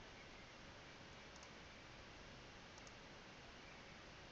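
Near silence with a faint steady hiss, broken by two faint computer-mouse clicks, each a quick double tick, about a second and a half apart.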